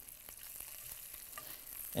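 Bacon quietly sizzling in a skillet over low heat, with a few faint ticks as the strips are turned with metal tongs.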